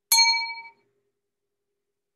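A single bright metallic ding, struck once and ringing out with several overlapping tones that fade within about a second.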